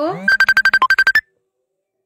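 A fast run of about a dozen short electronic beeps at one high pitch, one dipping lower and the last one higher, like a phone alert tone. The beeps cut off suddenly into dead silence.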